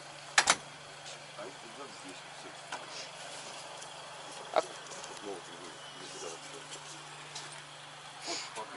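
Luggage being loaded into a car's open boot: a sharp double knock about half a second in and another knock about four and a half seconds in, over a low steady hum, with faint voices.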